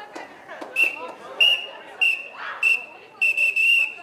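Referee's whistle blown in about six short blasts, the last the longest, with faint voices of players and onlookers behind it.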